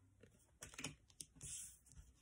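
Near silence with a few faint clicks and a soft rustle from paper flashcards being handled and swapped.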